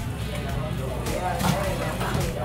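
Background music over a busy eatery's ambience: faint voices of other diners and a steady low rumble.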